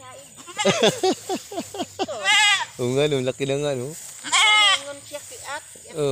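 Young goat bleating: several quavering calls, two of them high-pitched, with lower calls between.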